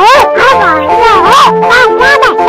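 Squawking, garbled cartoon duck voice in the Donald Duck style, its pitch wavering up and down with no clear words, over steady background music.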